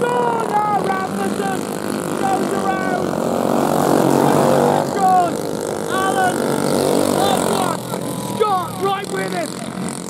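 Racing kart engines running hard as a pack of karts goes past, their note rising and falling with the revs and loudest about four to five seconds in.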